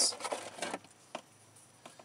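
A few light metallic clicks and taps as a socket wrench is handled and fitted onto an oil-pan drain plug, with one sharper click about a second in and near quiet after it.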